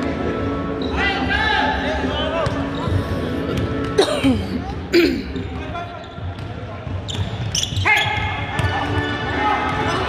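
A basketball bouncing on a hardwood gym floor during play, with voices calling out in an echoing hall and two sharp sounds about four and five seconds in.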